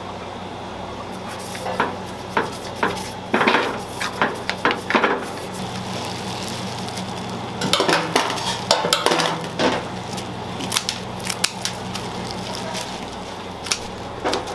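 Kitchen clatter: irregular bunches of knocks and scrapes from metal utensils against pans and a stainless-steel tray, over a steady low hum.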